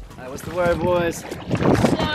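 Water sloshing and wind buffeting an action camera held at the surface in the surf, with a person's voice calling out briefly near the start.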